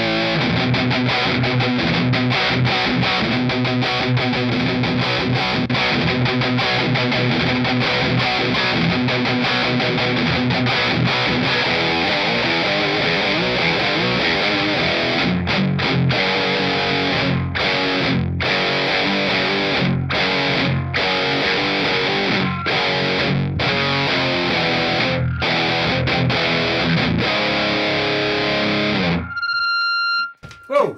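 Distorted electric guitar riff played through a TC Electronic Mimiq doubler pedal, which fattens the single guitar into a doubled-guitar sound. In the second half the chords are cut by short breaks, and the playing stops abruptly just before the end.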